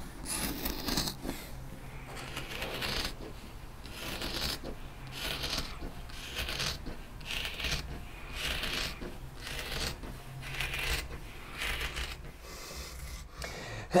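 Carbon fiber shears cutting through woven carbon fiber cloth: a steady series of crisp snips, about one a second.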